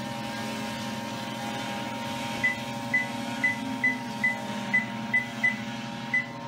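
Treadmill running with a steady electric hum. From about two and a half seconds in, its console gives a run of about nine short, high beeps, roughly two a second, as its buttons are pressed to change the settings.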